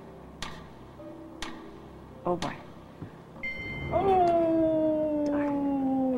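Game-show countdown timer ticking about once a second, then about four seconds in a loud electronic buzzer tone that sags slightly in pitch: the signal that the 30-second answer time has run out.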